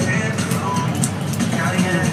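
Busy bar background: indistinct chatter from other people, with background music playing and light clinks of tableware.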